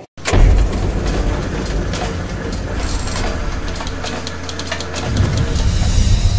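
Outro sound-effect sting: a loud, dense rushing noise over deep bass, starting with a hit just after a brief silence and running steadily on.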